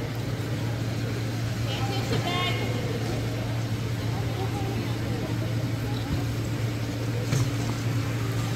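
Indoor gym ambience: a steady low hum with faint distant voices, and a brief high squeak or call about two seconds in.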